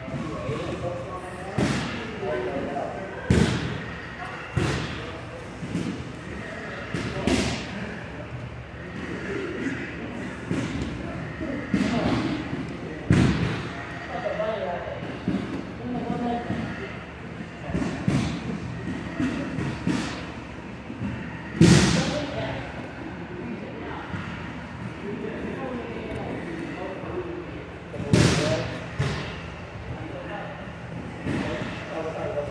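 Bare feet and bodies thumping on foam grappling mats during standing no-gi sparring: a dozen or so dull thuds at irregular intervals, the loudest about two-thirds of the way through, over a background of voices in the gym.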